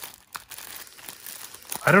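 Thin clear plastic bag crinkling softly as it is handled and turned over in the hands, with a few small crackles.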